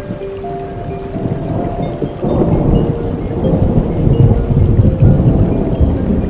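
Steady rain with soft, held musical notes over it. About two seconds in, a low rumble of thunder swells up and rolls on until near the end, the loudest sound here.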